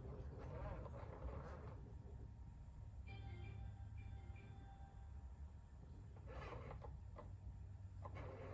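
Quiet room with a steady low hum; about three seconds in, a soft run of electronic tones from the Moxie companion robot lasts about a second and a half.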